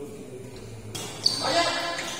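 Badminton rally: one sharp crack of a racket striking the shuttlecock a little over a second in, followed by voices.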